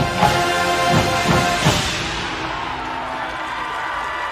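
Drum and bugle corps playing: the brass hornline sounds sustained chords over sharp drum and bass drum hits. The hits stop about halfway through and a softer chord holds on.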